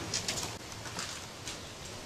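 Birds calling: a few short, high calls near the start and about a second in, over a steady low background.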